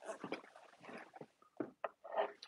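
Faint, irregular clicks and soft rustling of hands handling desk equipment while the camera is being set lower, with a few sharper clicks near the end.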